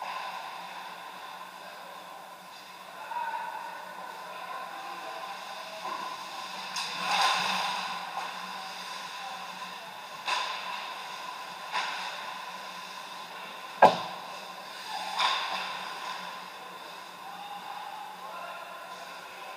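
Ice hockey play on a rink: skate blades scraping the ice and sticks and puck clacking, with one sharp crack, the loudest sound, about three quarters of the way through. A steady hum of the rink hall runs underneath.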